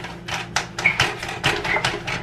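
Immersion (stick) blender running with a steady low hum, with rapid, irregular knocks and clatter as it works in the bowl.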